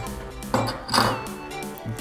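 Background music with steady held notes, with two short knocks about half a second and a second in as metal trumpet parts are handled.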